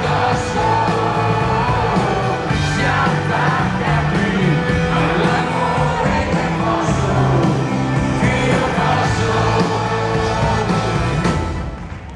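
Live rock band playing loudly, with sung vocal lines over electric guitars and a steady low end, heard from within the audience with occasional shouts and whoops. The music drops away briefly near the end.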